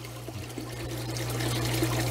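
Water trickling and splashing steadily from the waterfall into a 40-gallon paludarium, over a steady low hum, growing a little louder toward the end.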